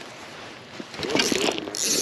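Pflueger President spinning reel being cranked close to the microphone, its gears and handle making a scraping mechanical whir that starts about a second in and grows louder, with a harsher rasp near the end.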